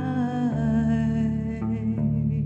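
A woman's voice holding a long wordless note over electric guitar, the note fading out about a second and a half in while the guitar keeps playing.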